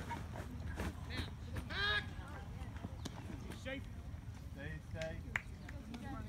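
Mostly voices: scattered shouts and calls from players and spectators, with one long drawn-out shout about two seconds in and a voice calling "stay, stay" near the end, over a steady low rumble.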